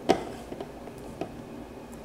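A sharp click, then a fainter one about a second later: small handling clicks as the phone and its USB cable are plugged in to the snowmobile's gauge.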